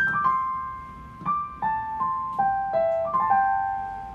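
Yamaha digital piano, in a piano voice, playing a slow single-line right-hand melody in the Chinese pentatonic scale. It opens with a quick run of grace notes swept into a held note, then moves on in single notes that ring and fade.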